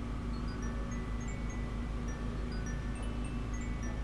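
Soft background music of short, high, chime-like ringing notes, over a steady low hum of room noise.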